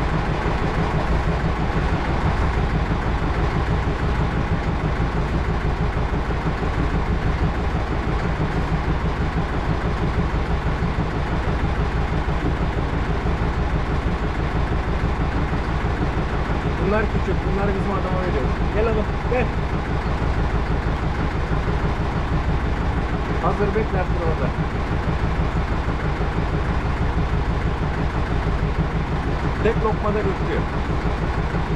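A small fishing boat's engine idling, a steady low drone throughout. A few short, wavering voice-like cries come a little past halfway through and again shortly after.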